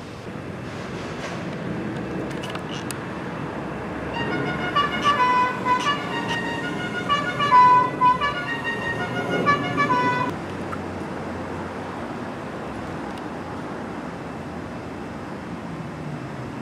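A vehicle's musical horn playing a short electronic tune of high notes that step up and down, starting about four seconds in and lasting about six seconds, over steady street traffic.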